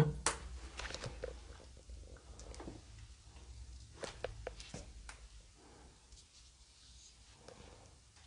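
A sharp tap right at the start, then scattered light clicks and taps that thin out after about five seconds, over a faint low hum.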